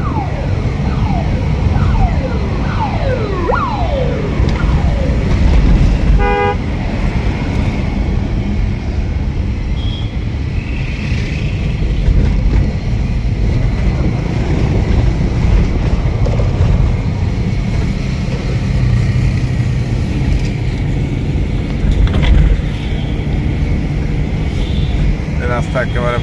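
Heard from inside a moving ambulance: steady low engine and road rumble, with the siren's falling wails during the first few seconds and again just before the end. A short horn toot sounds about six seconds in.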